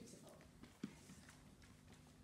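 Near silence: room tone with a faint steady hum and one soft knock a little under a second in.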